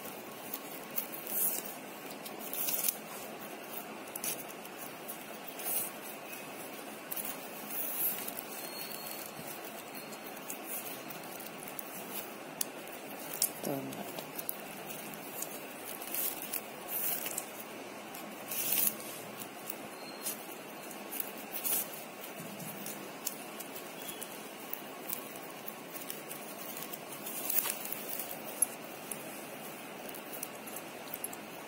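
Stiff plastic basket-weaving wire being threaded and pulled through a weave: scattered short rustles and clicks of the strands over a steady hiss.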